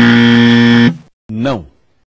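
Game-show style 'wrong answer' buzzer sound effect, one loud steady buzz lasting about a second, marking a mistake just made; a short sound falling in pitch follows about a second later.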